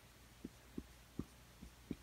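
Faint, soft taps of a felt-tip marker on paper as symbols are drawn: about five light, dull thumps spread over two seconds.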